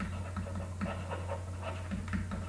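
Stylus scratching in quick short strokes on a pen tablet while handwriting, over a steady low electrical hum.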